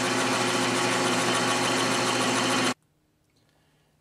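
South Bend metal lathe running steadily on a turning pass over a steel bar, an even mechanical hum with a whine. The sound cuts off suddenly about three-quarters of the way through.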